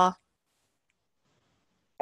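The end of a spoken word, then near silence.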